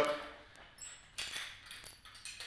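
Faint metallic clinks of a carabiner being handled at a nylon ankle strap, with a brief high ring a little under a second in and a short knock just after.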